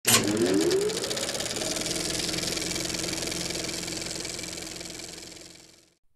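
Film-projector sound effect for the intro: a rapid mechanical clatter with a whirring tone that winds up in the first second, runs steadily, and fades out near the end.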